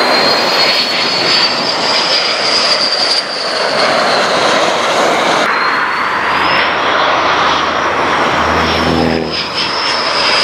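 F-15 Eagle on approach with its gear down, its twin Pratt & Whitney F100 turbofan engines running loud and steady with a high turbine whine that slowly rises and falls. The sound changes abruptly about halfway through.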